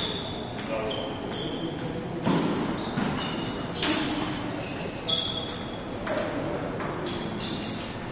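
Table tennis balls clicking off bats and the table in irregular hits, ringing in a large hall, the loudest click just before halfway through.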